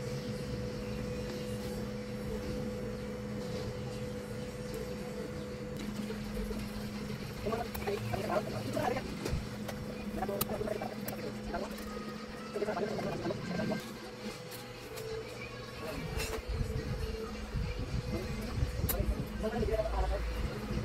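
Steady low hum with faint voices in the background that come and go.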